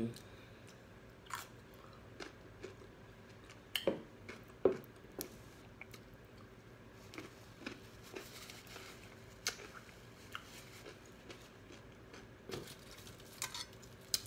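Close-up chewing of crispy fried chicken wings: scattered wet mouth clicks and crunches. A soft paper napkin rustle comes about eight seconds in.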